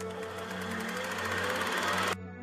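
Video transition sound effect: a swelling whoosh laced with a rapid, even rattle that grows steadily louder and cuts off abruptly at the end, over a steady low music drone.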